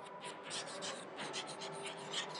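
Chalk writing on a chalkboard: a quick, irregular run of faint scratching and tapping strokes as letters are written.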